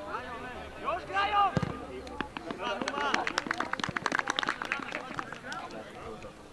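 Voices of players and onlookers calling out around a football pitch, no clear words. About halfway through comes a quick, irregular run of sharp clicks or taps lasting a couple of seconds.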